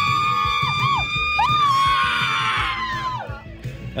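A woman's long, high scream into the microphone, held on one pitch for about three seconds with a few brief dips, then falling away, over background music.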